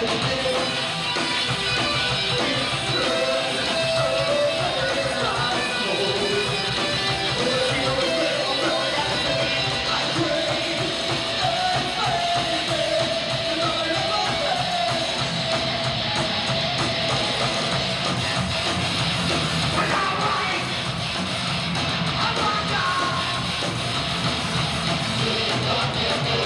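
Four-piece rock band playing live, electric guitars to the fore in a loud, dense mix with held, wavering guitar notes.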